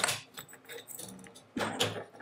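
Steel recoil spring and bolt-weight assembly of a CETME C2 submachine gun being drawn out of the receiver tube: a sharp metallic clink at the start, then light jingling and scraping of metal on metal, a little louder near the end.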